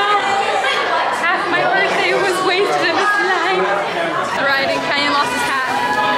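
Crowd chatter: many people talking over one another in a large indoor hall, with no single voice standing out.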